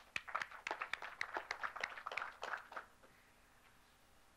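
Brief scattered applause from a small audience, a dense patter of irregular claps that thins and dies out about three seconds in, leaving faint room tone.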